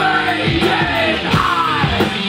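Live rock band playing: electric guitars, bass and drums, with a male singer's voice gliding in pitch over them.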